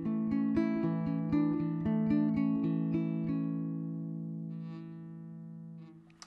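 Fingerstyle guitar picking a melody over chords, with notes plucked in quick succession. About halfway through the playing stops and the last chord is left to ring, fading out slowly.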